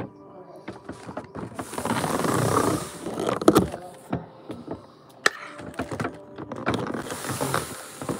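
Rustling and knocking of things being handled and moved on a table close to the microphone, with a noisy rustling spell about two seconds in and sharp knocks a little later.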